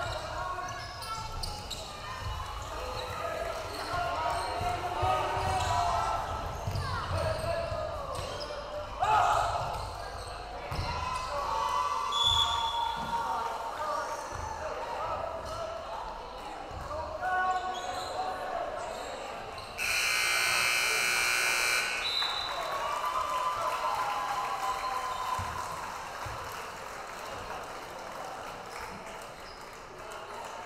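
Gymnasium scoreboard buzzer sounding once, a steady buzz for about two seconds about two-thirds of the way through, marking the end of the second quarter at halftime. Crowd voices and a bouncing basketball come before it.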